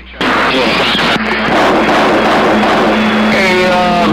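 CB radio receiver on 27.025 MHz AM: a brief dropout, then a loud wash of static with garbled, barely readable transmissions under it. A steady low hum of a carrier beat comes in about halfway through, and a voice starts to break through near the end.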